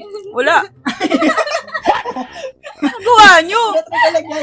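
Young people's voices giggling and laughing with snatches of talk, loudest in a high-pitched burst of laughter about three seconds in.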